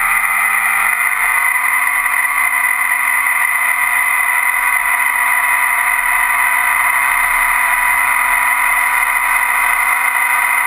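Model air boat's propeller motor, heard close up from on board, running steadily as the boat moves across the water. Its pitch steps up a little about a second in.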